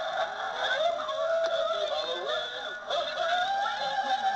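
Electronic ghostly moaning from an animated Halloween ghost prop: a drawn-out wavering tone that slides slowly up and down in pitch, over a steady thin high whine, heard played back through a small screen's speaker.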